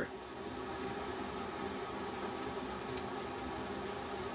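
Steady background hiss with a faint hum: room tone under a pause in the narration.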